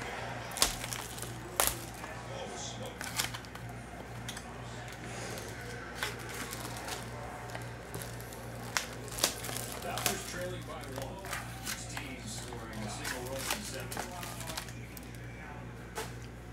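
Trading-card foil packs and cards being handled on a table: crinkling foil and a series of sharp clicks and taps, the loudest near the start and again about nine seconds in, over background music.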